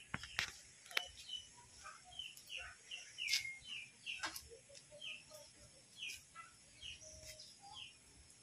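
Small birds chirping faintly in short, repeated notes, with a few sharp light clicks in the first few seconds.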